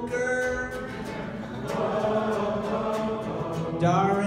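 A group of voices singing along together in held, sustained notes over a strummed guitalele (six-string ukulele).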